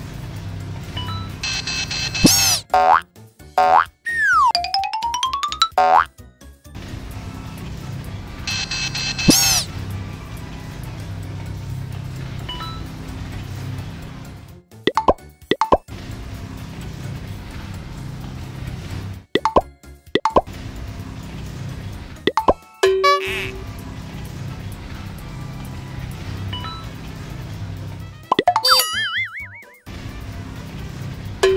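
Children's cartoon background music with a steady beat, broken by several cartoon sound effects: bright swooping tones, a falling-then-rising slide, short pops, and a wobbling effect near the end.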